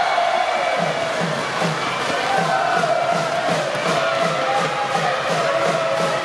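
A cheering section in the stands chanting in unison over a drum beaten steadily, about two and a half beats a second, with crowd noise throughout.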